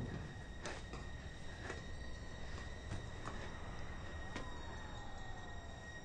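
Quiet city background: a steady low rumble with a few faint, sharp clicks scattered through it. A faint tone glides slowly down near the end.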